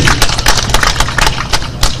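Hand clapping from the rally audience: a quick, loud run of sharp claps, about seven a second.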